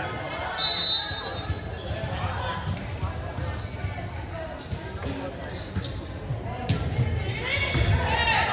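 Volleyball play in a gymnasium: a referee's whistle blows briefly about half a second in, then the ball is struck during the rally, with a sharp hit late on, echoing in the hall.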